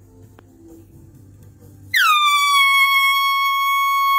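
Handheld canned air horn blasted about two seconds in: one loud, steady single-pitched honk that drops in pitch as it starts and then holds.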